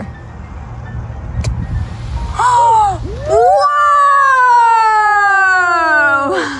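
A child's excited vocal cries: a short rising-and-falling 'whoa' about two and a half seconds in, then a long, drawn-out high cry that slides steadily down in pitch for nearly three seconds. Before the cries there is a low rumble with a single click.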